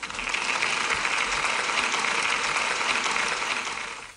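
Crowd applause: dense, steady clapping that starts abruptly and tails off near the end.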